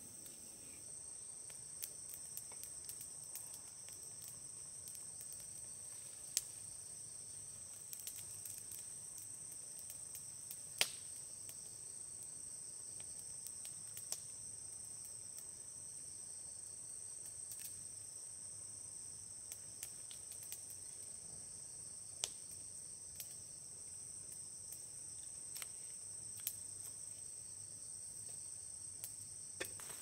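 Steady high-pitched insect chorus, with scattered sharp crackles and pops from a burning wood campfire, the loudest about six and eleven seconds in.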